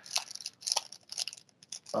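A trading card pack's wrapper being torn open and handled, crinkling in a series of short, irregular crackles.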